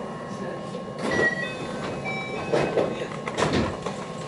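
Inside a JR West 223 series 2000 electric train standing at a station platform: a steady cabin hum with a few sharp clunks and short beeping tones from about a second in.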